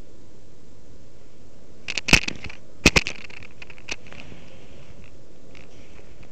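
Handling noise of a small camera being moved about under a fabric or mesh covering: a cluster of sharp crackles and scrapes about two to three seconds in, then a few lighter clicks, over a steady background hiss.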